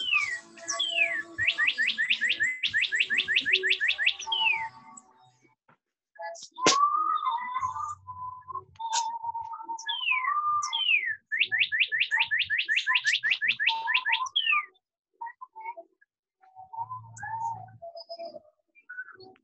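A songbird singing outdoors: a whistled phrase of falling slurred notes, then a fast run of rising notes, repeated twice. Between the two phrases there is a sharp click and a lower, steadier whistled tone.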